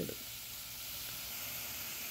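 Sliced onions and spice powders frying in oil in a steel pot: a steady, even sizzle with no stirring.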